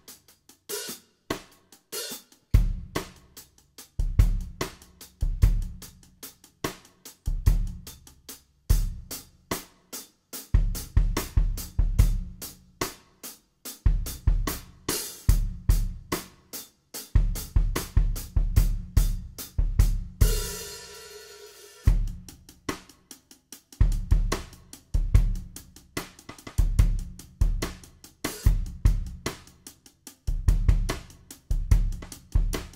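Drum-kit groove played with Zildjian K hi-hats struck on the edge with the neck of the stick, changing partway through to the shaft of the stick on the edge, over bass drum and snare. Around two-thirds of the way in, a cymbal rings out for about a second and a half before the groove picks up again.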